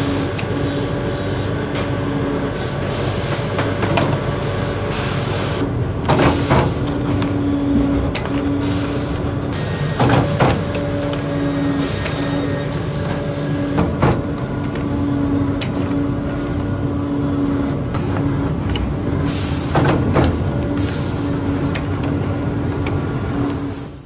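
Toe-lasting machine at work lasting a leather boot upper over the toe of the last: a steady machine hum with a pitched tone that comes and goes, broken by about eight short, sharp hisses as it cycles.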